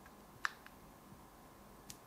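A few faint button clicks on a small RGB controller remote: a sharper click about half a second in, a softer one just after, and another near the end, over quiet room tone.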